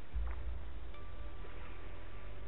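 Steady low wind rumble on the camera microphone, with a faint thin tone about halfway through.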